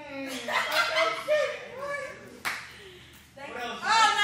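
Voices calling out and laughing, with a single sharp clap or slap about two and a half seconds in.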